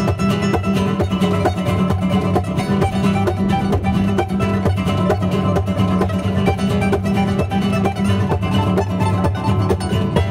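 Two nylon-string flamenco guitars playing gypsy rumba as a duo, with fast, rhythmic percussive strumming under picked melody notes.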